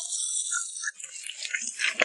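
Hot oil sizzling on minced garlic and sliced chillies in a steel bowl, dying away within about the first second. Then chopsticks toss the cold salad, with light clicks and rustles against the bowl.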